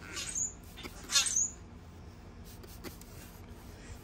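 Two quick spritzes from a hand trigger spray bottle of adhesive remover, about a second apart, the second louder, followed by a few faint ticks.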